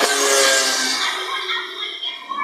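Television audio of a channel promo bumper, heard through the TV's speakers in the room: a bright swishing shimmer with held musical tones that fade out over about the first second and a half.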